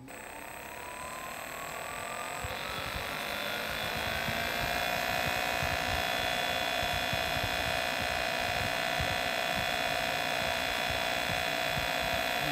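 Atlas Copco multi-claw dry vacuum pump and its electric motor being run up on a variable-speed drive. A whine climbs in pitch and loudness over the first four seconds or so, then holds steady at speed.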